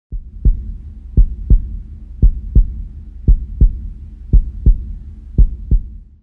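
Heartbeat sound effect: six deep double thumps, about one a second, over a low hum.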